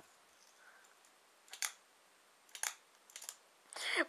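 Fingerboard (finger skateboard) clacking against the floor as it is popped and landed in ollie attempts: two sharp clicks about a second apart, then a few fainter taps near the end.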